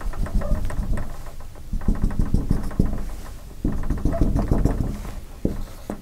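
Felt-tip dry-erase marker tapping against a whiteboard in quick runs of short dabs, drawing dashed lines. There are three bursts of tapping and one sharper knock near the end.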